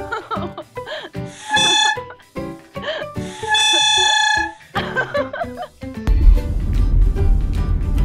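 Plastic toy trumpet horn in a golden retriever's mouth sounding two steady blasts, the second about twice as long as the first, over background music. About six seconds in, a steady low rumble like a car interior takes over.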